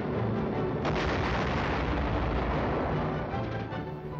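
Film score music with a shell explosion going off about a second in, its rumble dying away over the next couple of seconds.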